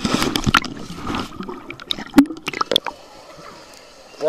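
Swimming-pool water sloshing and gurgling around a camera dipped under the surface, with scattered sharp clicks and knocks; the loudest click comes about two seconds in, and it goes quieter near the end.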